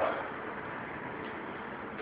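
Steady faint background noise, an even hiss with no distinct knocks, steps or tones.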